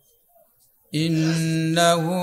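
Near silence for about a second, then a man's voice over a microphone begins a chanted Arabic recitation, holding one long, nearly level note.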